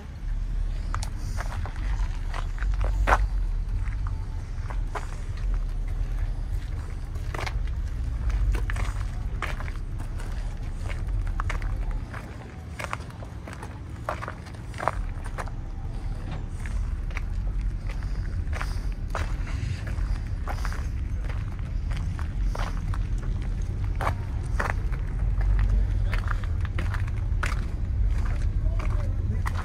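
Footsteps on asphalt, irregular short steps, over a steady low rumble on the phone's microphone.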